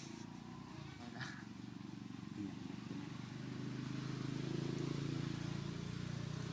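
A low, rough motor drone that grows louder over the last few seconds, with a faint click about a second in.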